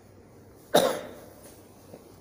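A single loud cough about three quarters of a second in, dying away within about half a second.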